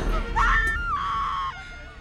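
A person screaming, one high cry held for about a second, from a dramatic film scene with background music underneath.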